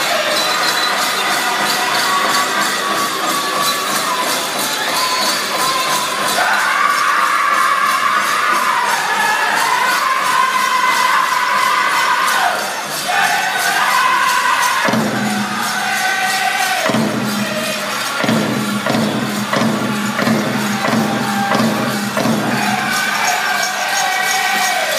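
A powwow drum group singing with a steady, even drumbeat under the voices, the high sung lines falling in pitch. Dancers' bells jingle along with the beat, and a crowd cheers now and then.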